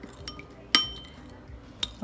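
A metal spoon stirring warm water in a ceramic bowl, striking the side with a sharp, briefly ringing clink about three-quarters of a second in and a lighter click near the end.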